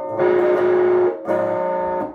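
Electric guitar playing rhythm chords: two chords struck about a second apart, each left to ring.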